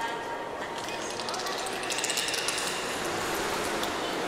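Indistinct voices of onlookers over water lapping and splashing as belugas swim at the surface, with a few short sharp splashes or clicks about two seconds in.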